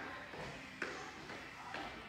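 Feet landing softly on the floor twice, about a second apart, while hopping forward and back over a line.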